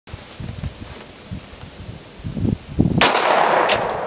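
A single gunshot about three seconds in, a sharp crack whose report trails off over most of a second, after a stretch of faint low knocks.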